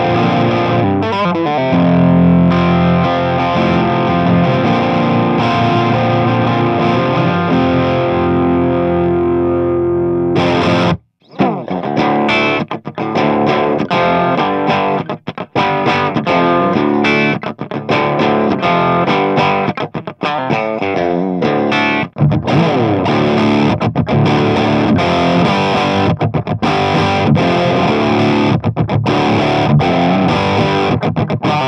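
Electric guitar with a 54k-ohm Alegree High Joule humbucker, played through an amp on its clean setting yet coming out distorted: the pickup's very high output has all but done away with the clean sound. Held chords ring out and fade for about ten seconds. After a brief break, choppy, stop-start rhythm chords follow.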